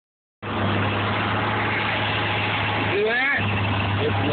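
A 1984 Chevrolet 305 small-block V8 idling steadily under an open hood. A brief voice comes in about three seconds in.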